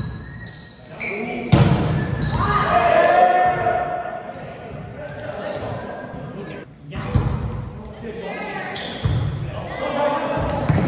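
Volleyball rally in a gym hall: sharp, echoing hits of the ball, the loudest about one and a half seconds in, with more about seven and nine seconds in, and players' shouted calls between them.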